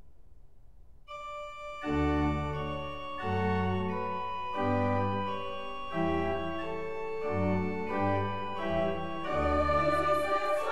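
Organ playing a solo passage of sustained chords, entering about a second in out of a dying reverberation, with deep pedal bass notes changing roughly once a second.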